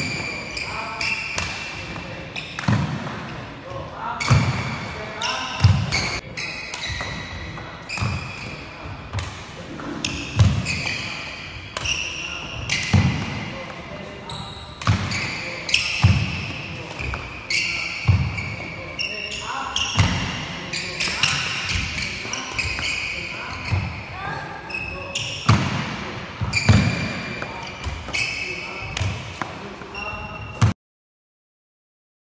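Badminton rally: rackets striking the shuttlecock in sharp cracks about once a second, with sneakers squeaking and footfalls on the wooden court between the shots.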